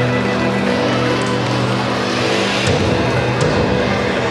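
Karaoke backing-track music playing an instrumental passage with sustained low notes and no singing.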